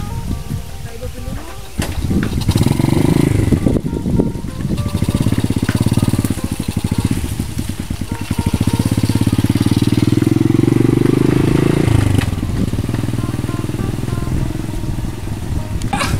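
Small motorcycle engine of a motorcycle-sidecar rickshaw running and revving as it pulls away, rising in pitch several times as it accelerates, then settling to a steadier run near the end.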